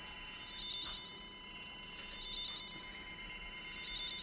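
Sci-fi medical electronics beeping: steady high electronic tones with runs of rapid high chirping pulses that come and go a few times.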